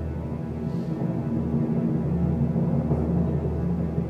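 Brooding suspense music, a steady low drone with sustained tones: the quiz show's tense underscore for a contestant's thinking time.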